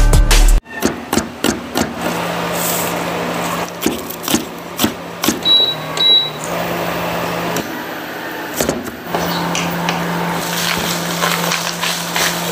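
Music with a beat cuts off abruptly, then a kitchen knife knocks against a cutting board in quick irregular chops over a steady low hum. Two short high beeps sound midway, as the induction cooker's controls are pressed.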